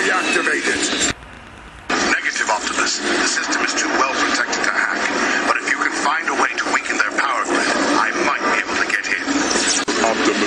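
Speech: a man's character voice talking, with a short pause about a second in.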